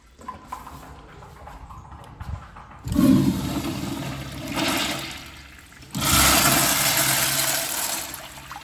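Wall-hung urinal's flush valve flushing, water rushing into and around the bowl. The rush comes on suddenly about three seconds in, eases, then surges again at about six seconds and keeps running.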